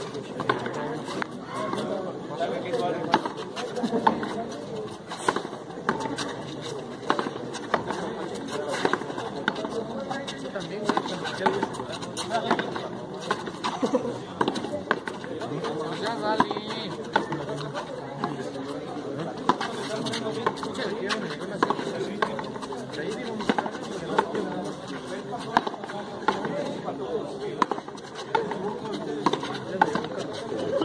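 Frontón handball rally: repeated sharp smacks of the ball struck by hand and hitting the court's wall, over a steady murmur of spectators' voices.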